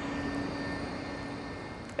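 Steady industrial drone from a cement plant's machinery: a constant low hum over a broad rushing noise with a faint high whine, easing slightly near the end.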